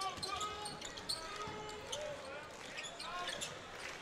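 Arena sound during live college basketball play: a ball being dribbled on the hardwood court, a few short knocks, over faint crowd noise and voices.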